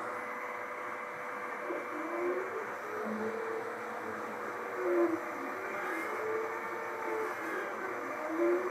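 Desktop CO2 laser running a job: a steady exhaust fan, with the stepper motors driving the laser head making hooting tones that rise and fall as the head traces a circle. The head moves through the cut without the beam cutting, because the beam attenuator is turned down.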